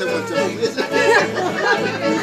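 Several people talking close by over accordion dance music.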